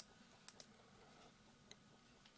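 Near silence broken by three or four faint, short clicks of a computer mouse, two of them close together about half a second in and one near the end.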